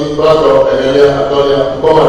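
A man speaking Ewe into a microphone, drawing out his words in a steady, chant-like delivery, with a short pause near the start and another near the end.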